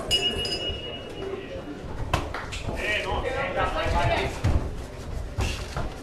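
A ring bell strikes once and rings for about a second, signalling the start of the Muay Thai round. Voices from the crowd follow, with a few sharp knocks.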